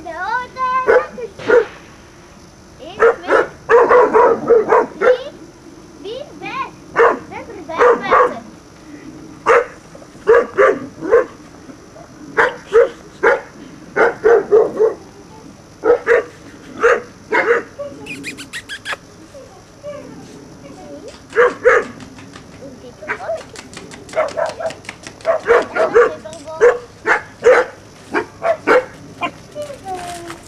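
German Shorthaired Pointer puppies barking and yapping in many short, high bursts, in clusters with brief pauses between.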